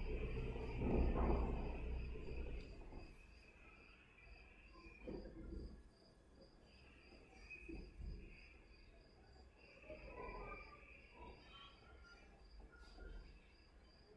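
A faint cricket chirping: an evenly repeating high-pitched pulse that runs steadily under quiet room noise. A louder low rumble fills the first two seconds, and a few soft knocks come later.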